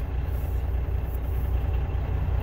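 Steady low drone of a semi-truck's engine and road noise, heard from inside the cab while driving.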